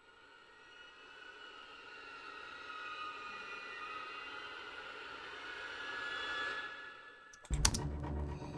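Pre-recorded Symphobia orchestral string-ensemble effect: a quiet, eerie high string texture with several sustained pitches that fades in from silence, swells for about six seconds and fades away. Near the end a sudden louder clicking sound cuts in.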